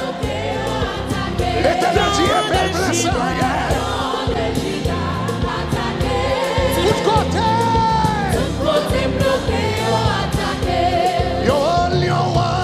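Live gospel worship music: a band with electric bass guitar and percussion, with several voices singing together over it.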